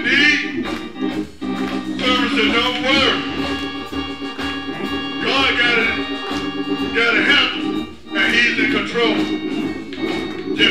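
Organ holding sustained chords under a man's preaching voice, delivered in phrases with a rising, half-sung cadence.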